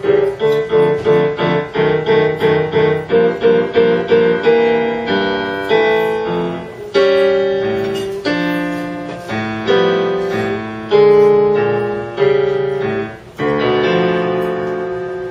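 Grand piano played solo, demonstrating tenths, the very wide left-hand interval of an octave plus a third. It starts as quickly repeated chords, two or three a second, then moves to slower held chords from about seven seconds in.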